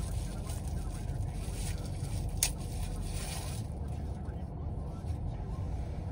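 Steady low rumble of a car's engine idling, heard inside the closed cabin. Over it come light rustling and handling noises, with one sharp click about two and a half seconds in.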